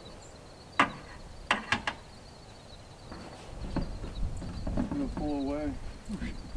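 A few sharp knocks, the loudest about a second and a half in, as a PVC pipe is handled against a metal-sided building. A faint steady high whine runs under them, and a short wavering call sounds near the end.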